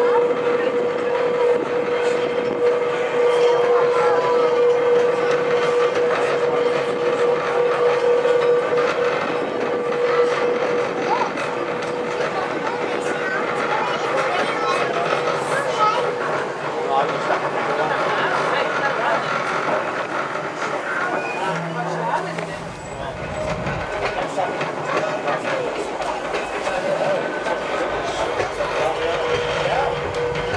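Blackpool's illuminated Western Train tram running along the track, heard from inside the carriage: a continuous rolling noise, with a steady whine for the first ten seconds or so. A low rumble joins in from a little after twenty seconds.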